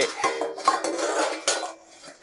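A cymbal slid into a padded cymbal bag, giving a scraping, clinking metallic rustle with a faint ringing tone that fades out near the end.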